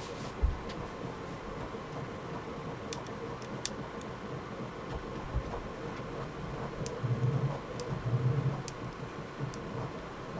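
Hex key working small screws out of the extruder's fan mounting on a Prusa i3 MK3S clone 3D printer: a few faint, light clicks over a steady hum. A couple of soft low thumps, and a louder low rumble around seven to eight and a half seconds in.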